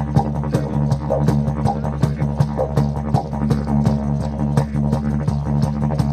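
Didgeridoo played in a steady low drone, with quick rhythmic pulses of about five a second and shifting overtones riding on top.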